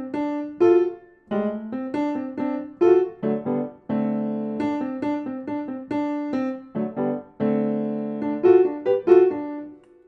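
Piano playing a blues-scale jazz lick of single notes and chords with grace notes, in several short phrases with brief breaks between them.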